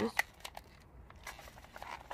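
A thin plastic plant tray of coleus being handled: faint rustling with a few light clicks.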